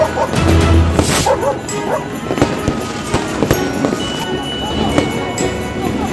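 Fireworks going off: scattered sharp bangs and crackles, with a short hissing burst about a second in, over music.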